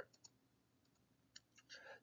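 Near silence: room tone in a pause of the speech, with a few faint clicks.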